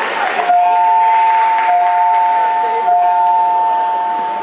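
A steady two-note tone, two pitches sounding together, starting about half a second in and held without a break.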